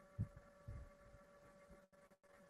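Near silence: a faint steady hum, with two soft low thumps in the first second.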